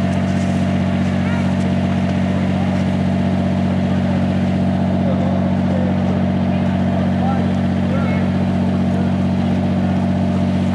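A steady, unbroken low mechanical hum, with faint voices in the background.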